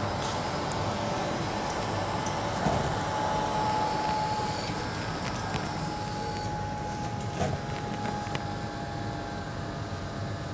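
Grundfos CR3-10 vertical multistage pumps with permanent-magnet motors running at reduced speed: a steady mechanical hum with a faint high whine that comes and goes, easing slightly quieter. The booster set is winding down with no water demand, its pumps slowing and switching off one by one.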